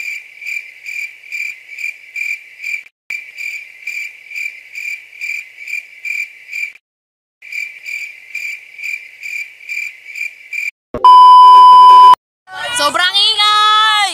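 Cricket chirping in an even pulse of about three chirps a second, broken twice by short gaps. About eleven seconds in, a loud electronic bleep lasts about a second, and a voice starts talking after it.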